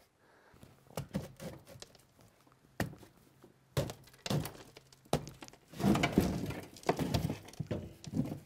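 Scattered knocks and thunks of hard objects being handled and set down in a small shop, growing busier in the last few seconds with rustling between the knocks.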